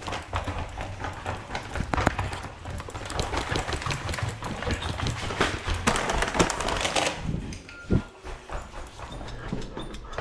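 Footsteps of shoes on a hard hallway floor, with a paper takeout bag rustling and clothing brushing a body-worn microphone; the handling noise thins out after about seven and a half seconds.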